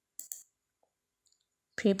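Computer mouse button clicked, two quick clicks close together, placing a dimension in AutoCAD.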